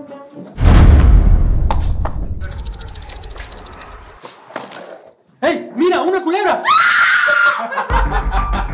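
A sudden dramatic boom sound effect about half a second in, with a low rumble that slowly dies away and a fast, even rattle for about a second and a half in the middle. Then voices break out, rising into a high-pitched scream near the end.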